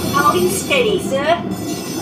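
Steady mechanical rumble inside a Disneyland Submarine Voyage ride submarine. Over it the ride's soundtrack plays a brief voice, then a pitched sound that slides down and back up about a second in.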